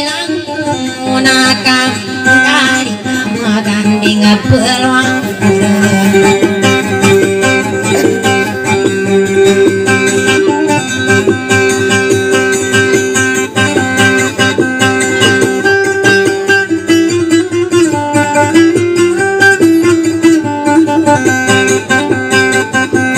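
Acoustic guitar being plucked in a continuous melodic line, with a person singing at times.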